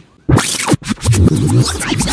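Pages of a comic book flipped through rapidly, a loud scratchy rustle starting about a quarter second in.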